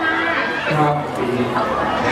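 A man speaking Thai, with crowd chatter behind him.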